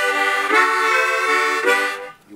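Echo harp, a tremolo-tuned harmonica, playing held chords. The chord changes about half a second in and again near the end.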